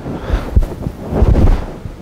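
Rustling and low dull thuds from swinging arms and shifting weight, clothing brushing close to the microphone. It comes twice, about half a second in and again just past the middle.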